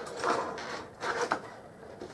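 Cardboard model-kit box lid being pressed down and shifted, rubbing and scraping on the box, with a short sharp click a little over a second in. The box is bent out of shape, so the lid won't go on properly.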